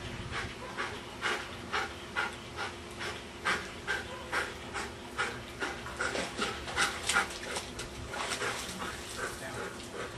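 Dog panting hard, a little over two breaths a second, loudest a few seconds before the end.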